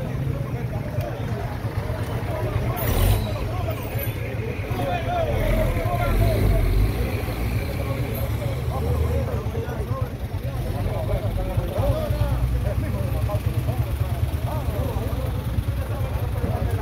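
Indistinct voices of several people talking over one another above a steady low rumble, with a brief sharp noise about three seconds in.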